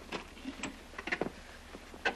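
A few light knocks and clicks of children handling an old box and moving on a stone floor, over a steady low hum.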